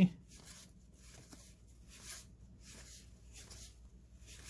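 Faint handling of cardboard 1990 Donruss baseball cards being flipped through by hand: several soft, irregular swishes as cards slide across one another in the stack.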